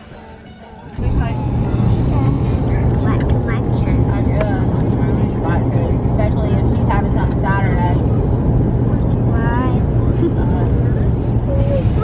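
Steady low road-and-engine rumble inside a moving car's cabin, starting suddenly about a second in, with faint voices and snatches of music over it.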